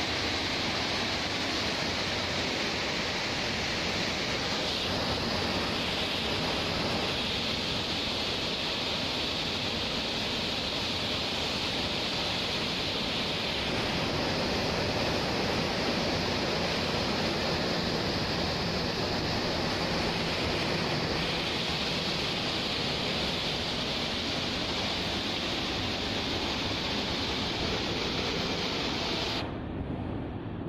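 Cyclone-force wind and heavy rain blowing steadily: a dense, even noise that dips briefly near the end.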